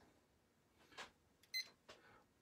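Near silence, broken by a faint click about a second in and a short, high electronic beep a little past halfway.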